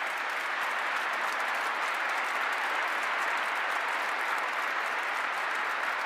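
A large congregation applauding, a dense, steady clapping that holds at an even level throughout.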